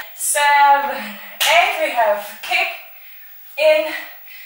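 A woman's voice making drawn-out, pitched call-outs with gliding pitch, with a sharp smack, like a clap, about one and a half seconds in.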